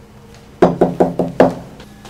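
About five quick knocks on a door, a little under a second in all, starting just over half a second in.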